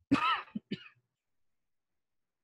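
A person clearing their throat and coughing: one rough burst followed by two short ones, all over within about the first second.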